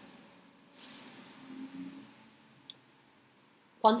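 A woman's short breath about a second in, then a faint low hum and a single click; she starts speaking near the end.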